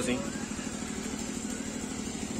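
A steady low engine running, like an idling motorcycle, under open-air background noise, with faint distant voices.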